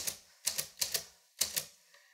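We R Memory Keepers Typecast manual typewriter being typed on: four keys struck over about a second, each a sharp clack.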